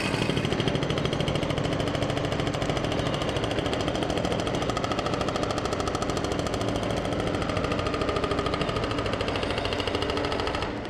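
Backhoe-mounted hydraulic breaker hammering the road surface in a rapid, even stream of blows, many per second, with the machine's engine running underneath. It is breaking up pavement to dig down to a broken water main.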